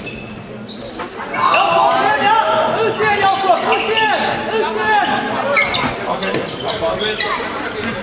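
Indoor handball play in a sports hall: shoes squeaking on the court floor, the ball bouncing and players calling out, getting busier and louder about a second and a half in.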